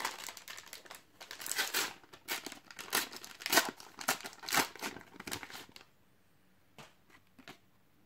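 Plastic wrapper of a Panini Adrenalyn XL trading-card fat pack being torn open and crinkled by hand, a run of sharp rustling crackles that stops about six seconds in.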